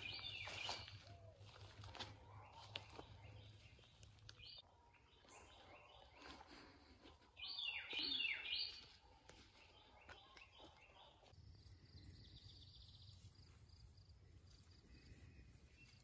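Small wild birds chirping in several short bursts of quick, high calls, the loudest about seven to nine seconds in. A faint high trill follows near the end.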